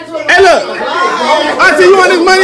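Several loud, high-pitched voices talking and exclaiming over one another, with no clear words.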